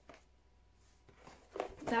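Faint handling of a cardboard game box being turned over in the hands, in an otherwise quiet small room, with a few soft knocks near the end as a woman starts to speak.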